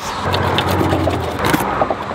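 Road traffic rumbling by on a highway bridge overhead, over scattered sharp clicks and scrapes of handling close by.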